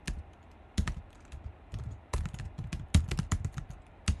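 Typing on a computer keyboard: irregular keystrokes, with a short pause just after the start, then quicker runs of clicks.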